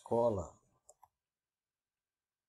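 A man's voice finishes a word, then near silence with two faint clicks about a second in, a computer mouse being clicked.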